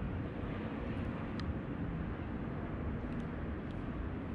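Steady low rumbling background noise, with a few faint clicks about a second and a half in and again near the end.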